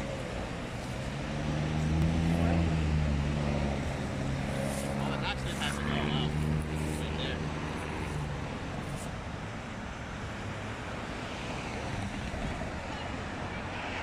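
A car engine revving hard in two long runs, its pitch rising and falling, over steady street traffic.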